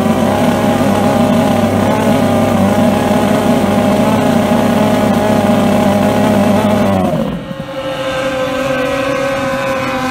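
Two-stroke racing outboard engine on a hydroplane running loud at steady high revs while the boat is held at the shore, its propeller throwing spray. About seven seconds in the sound suddenly drops and changes as the boat is let go and runs off, leaving a quieter, steadier engine tone.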